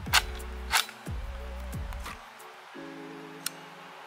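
Background music, with two sharp clicks about half a second apart near the start and a faint one near the end: the trigger of a .22 LR HK MP5-style gun being pulled and reset.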